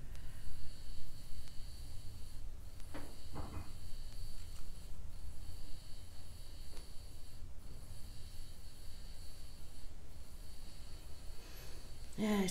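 Quiet room tone with a steady low hum and a faint high steady tone, broken about three seconds in by two short sniffs from a person with a cold.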